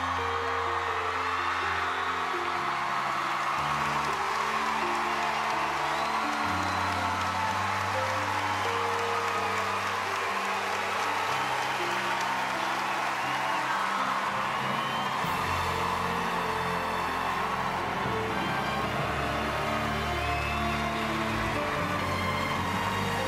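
A large audience applauding and cheering with whoops, over background music of slow, sustained chords that change every few seconds.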